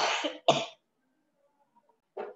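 A woman coughing twice into her hand, two short coughs about half a second apart.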